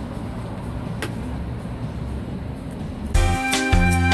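Low, steady street-traffic noise with a single click about a second in. About three seconds in, louder music starts with held chords over a deep bass note.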